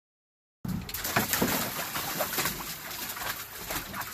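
Water splashing and sloshing in a plastic kiddie pool as a German Shepherd steps in and paws at the water, in quick irregular splashes. The sound starts abruptly about half a second in.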